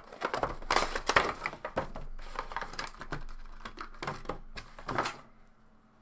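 A cardboard Funko Pop window box being opened and the vinyl figure pulled out of its packaging: a dense run of crackling, clicking and rustling for about five seconds, stopping shortly before the end.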